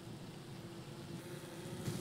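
Faint open-air ambience on the water: an even low hiss of wind and water, with a thin steady hum. One small click near the end.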